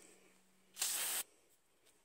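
A single half-second spray from an aerosol can of brake cleaner, a little under a second in, cleaning out a freshly drilled spark plug fouler.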